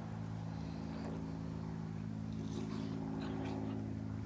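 Dogs playing and wrestling on grass, with a few faint short yips or play-growls about two and a half to three and a half seconds in, over a steady low hum.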